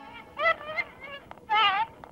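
Playback of an early Edison talking-doll phonograph recording: a thin, high-pitched voice speaking or singing in short, wavering phrases over steady record hiss.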